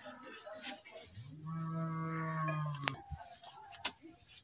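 A cow mooing once: one long, low, steady call of nearly two seconds, starting about a second in. Two short knocks follow near the end.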